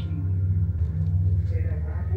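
A low, steady droning rumble from the ominous background music bed of a horror video.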